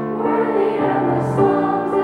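Children's choir singing a hymn, holding long notes that move to new pitches together.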